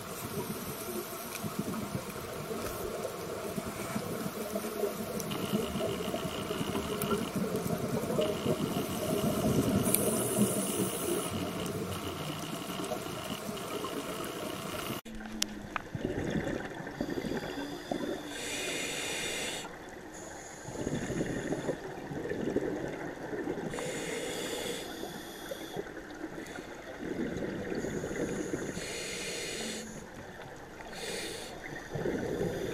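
Underwater sound: steady water noise at first. From about halfway there are rushing bursts of scuba exhaust bubbles from a diver's regulator, one every few seconds in time with the breathing.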